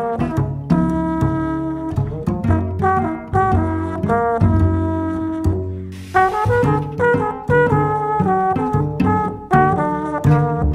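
A jazz-leaning trio of trombone, cello and double bass playing a composed piece in short, separate notes over low bass notes, with a short burst of hiss about six seconds in.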